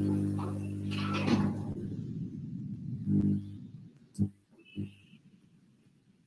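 A steady low electrical hum picked up by an open microphone on a video call cuts off suddenly about three and a half seconds in. A few faint knocks or clicks follow.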